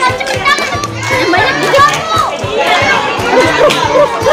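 Many young children shouting and chattering at once, with music playing in the background.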